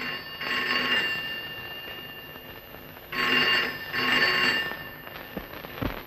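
Desk telephone bell ringing: one ring near the start, then two short rings in quick succession about three seconds in, with ringing hanging on between them.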